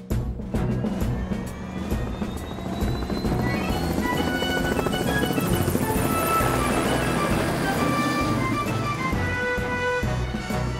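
Helicopter sound effect: fast rotor chopping with an engine whine rising in pitch as the helicopter lifts off, under background music whose melody comes in a few seconds in.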